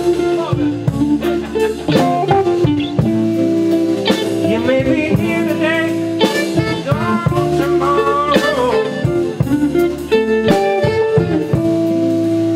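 Live blues band playing: electric guitars, bass and drums, with a lead line of bending, wavering notes over the steady rhythm.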